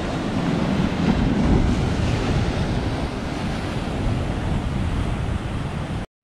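Storm-driven sea waves breaking and washing against a rocky shore, a steady surging wash that swells about a second and a half in.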